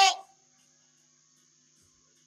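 The last word of a man's amplified voice cuts off in the first moment, then near silence: room tone with a faint steady high-pitched hiss.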